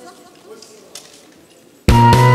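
Quiet stage ambience with faint voices and a click about a second in, then a loud trot backing track with bass and drums starts abruptly just before the end.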